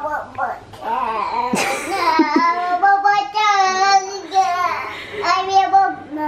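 A toddler's voice vocalizing in a sing-song way, without clear words, holding long high notes in the middle.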